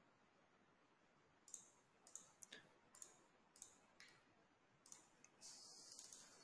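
Faint computer mouse clicks, about eight of them, short and irregularly spaced, over near silence.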